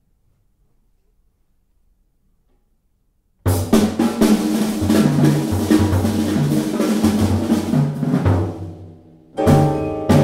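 Near silence, then about three and a half seconds in a quartet of piano, vibraphone, double bass and drum kit comes in suddenly and loud, playing dense, fast music with busy drumming. It fades briefly near nine seconds, then returns with sharp accented hits.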